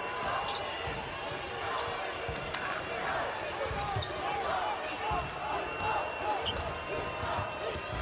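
Arena crowd noise during a live basketball game, with voices and cheering from the stands and a basketball being dribbled on the hardwood court in irregular thuds.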